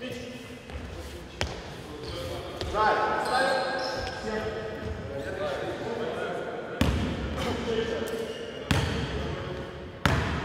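A basketball bounced twice on the gym floor, about two seconds apart in the second half, each bounce echoing in the large hall, with players' voices talking in between.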